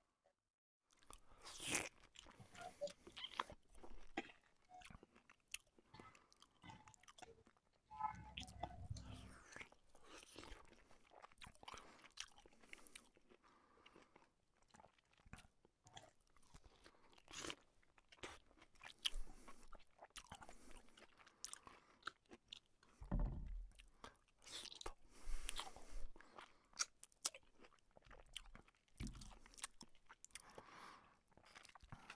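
Close-miked chewing and biting of a man eating naan bread: many short mouth clicks and crunches, faint overall, with two low thumps, about a third and three quarters of the way through.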